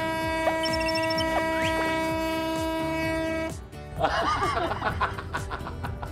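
A boat's horn sounding one long steady blast as the departure signal, with a few sliding sound effects over it; it cuts off about three and a half seconds in. Voices then shout and laugh over background music.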